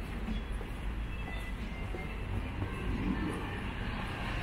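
Steady low rumble of a car engine in the street, with a few faint higher sounds above it.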